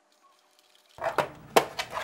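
About a second of near silence, then four or five sharp clicks and taps of a screwdriver working the single screw on a laptop's plastic bottom access panel.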